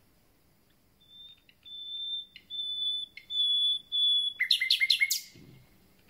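Common nightingale singing. After a short pause come about four long, pure whistles on one pitch, each louder than the last. They are followed by a quick burst of about five loud, sharp notes that sweep downward, ending about a second before the close.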